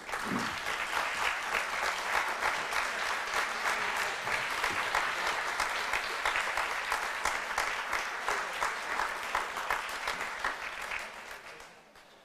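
Audience applauding, a dense steady clapping that thins out and dies away near the end.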